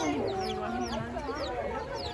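Baby chicks peeping: a rapid series of short, high chirps, each sliding down in pitch.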